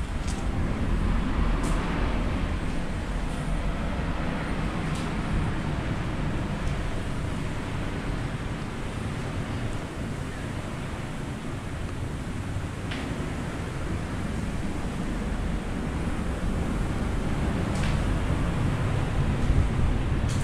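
Steady low rumble of wind buffeting the action camera's microphone, with a few faint clicks scattered through it.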